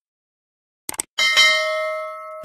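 Sound effect of a subscribe-button animation: two quick mouse clicks about a second in, then a single bell chime that rings on and slowly fades.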